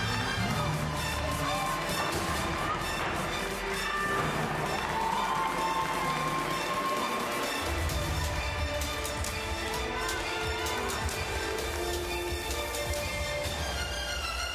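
Gymnastics floor exercise music playing over the arena sound system: a melody with a heavy low beat that drops out for a few seconds and comes back just past the middle.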